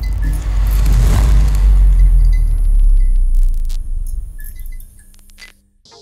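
Intro sound effect: a deep rumble that swells up, holds for a few seconds and fades out, with scattered clicks and short high tones over it.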